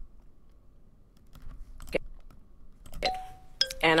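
A quiet pause, then near the end two short chime-like tones, a higher one and then a lower one.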